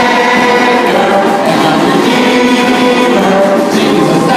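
A group of voices singing a Christian worship song together over live band accompaniment, loud and unbroken.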